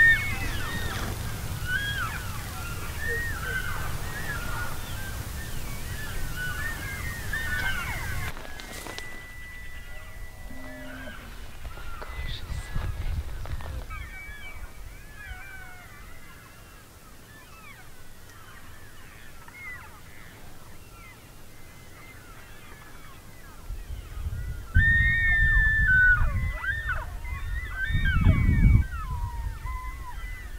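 A large elk herd calling: many short, overlapping rising-and-falling mews and chirps from cows and calves, with a few longer whistled calls. A low rumble comes and goes, loudest in the last few seconds.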